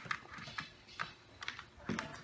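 Irregular light taps and clicks, about six in two seconds: puppies' paws and claws pattering on the play-pen floor.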